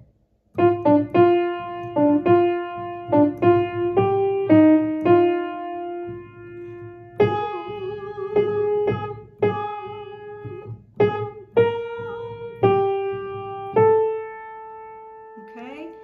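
Grand piano playing a choral alto part as a single melodic line. The notes are struck one at a time, some short and some held, and the line closes on a long held note that fades away.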